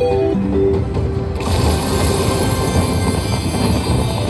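Slot machine free-spin bonus sounds: a short melodic jingle ends in the first half second, then about a second and a half in a loud rushing, rumbling sound effect starts and keeps going, the machine's effect for extra wild symbols being added to the reels.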